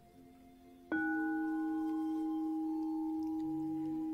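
A bell of the meditation kind struck once about a second in, its tone ringing on steadily to the end. Before it there is only faint, soft sustained music.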